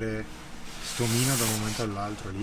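A man's voice saying a few words, with a loud rustling noise under it for about a second in the middle.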